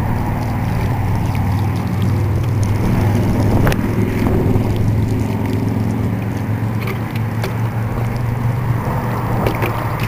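Water sprinkling from the rose of a plastic watering can onto freshly planted flower-bed soil, over a steady low rumble, with a few brief knocks.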